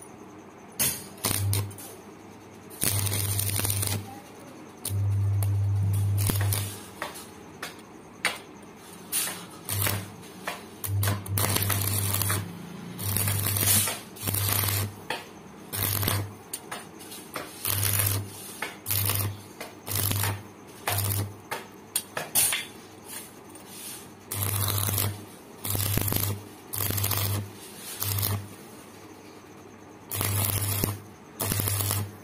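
Electric arc welding in a series of short strikes: each time the arc is struck there is a steady mains-frequency buzz with crackling, lasting about a second at a time, the longest run about two seconds, with brief pauses between.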